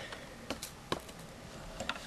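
Metal spoon stirring a solution in a clear cup, knocking against the cup's side in a few sharp taps: one about half a second in, one about a second in, and a couple more near the end.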